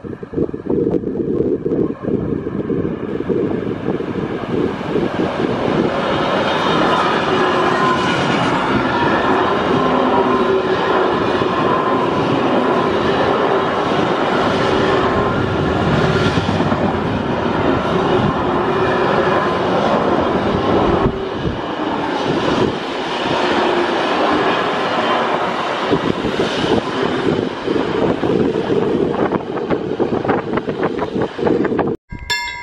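Long freight train of container and box wagons, hauled by an electric locomotive, rolling past close by. The steady rolling noise of wheels on rail builds over the first few seconds and then holds. Rhythmic wheel clatter comes through in the second half.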